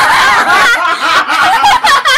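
Loud laughter from several people at once.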